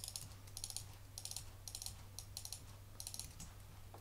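Computer keyboard and mouse clicks, in about seven short quick clusters, over a faint steady low hum.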